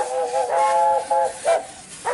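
Several narrow-gauge Talyllyn Railway steam locomotives' whistles sounding together in a chord: a held blast that breaks into short toots, the last about one and a half seconds in, over the hiss of steam.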